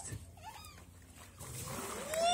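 Water splashing and streaming in a baptismal tank as a person is lifted back out of it, rising after about a second and a half of quiet. A faint short whine sounds about half a second in.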